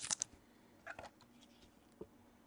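Trading cards in plastic holders handled with gloved hands: a few short, soft clicks and rustles at the start and one more about a second in.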